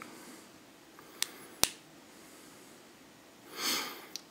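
Two sharp clicks about a second in, less than half a second apart: the switch of a UV curing flashlight being pressed on. Near the end, a short breath-like hiss.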